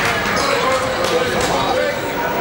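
Basketballs bouncing on a gym court, several sharp knocks, over a constant background of players' and spectators' voices.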